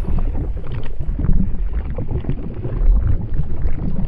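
Plastic wheels of a child's ride-on toy rolling across a hard floor: a continuous low rumble with small irregular knocks.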